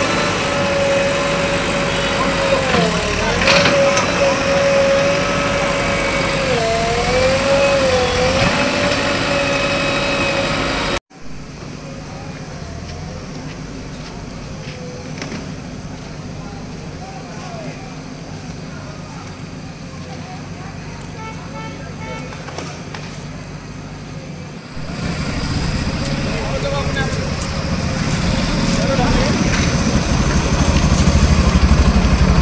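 JCB backhoe loader running while it digs, with a steady whine that dips in pitch twice as the arm takes load. About eleven seconds in the sound cuts to a quieter street with faint voices, and the backhoe's engine comes back louder near the end.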